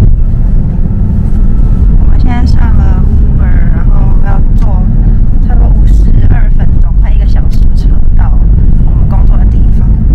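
Loud, steady low rumble of a moving car heard from inside the cabin, with voices talking over it at times.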